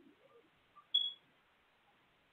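A quiet pause with one short, sharp, high-pitched blip about a second in.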